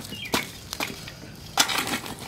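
Steel folding shovel scooping burning wood and embers out of a fire pit: a few scattered knocks and scrapes against wood and gravelly soil, with the loudest short cluster near the end.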